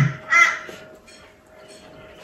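Crow cawing, two harsh caws about half a second apart near the start, the end of a quick series.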